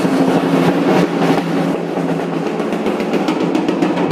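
Drums being played, a fast run of strokes that crowds into a roll in the second half.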